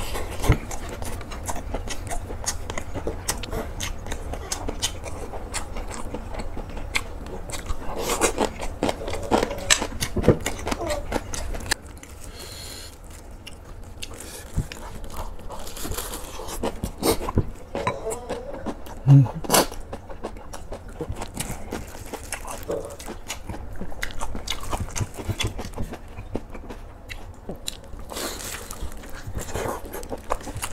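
Chewing and crunching of freshly made napa cabbage kimchi with rice: many small crisp crunches and wet mouth sounds, with a quieter stretch partway through.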